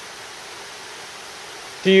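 Steady, even rush of a rocky mountain creek flowing, with a voice starting to speak near the end.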